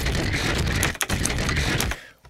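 Playback of an experimental bass sound made from resampled audio pushed back through pitch-correction and distortion processing: a dense, gritty, noisy texture with heavy low end and short choppy gaps, cutting off abruptly at the end. It sounds like crap.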